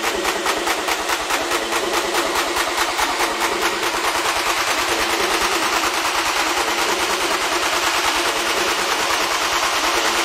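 Techno track played in a DJ mix: a fast, steady beat of kick drum and hi-hats, with a hissing wash of noise swelling up over the second half as the track builds.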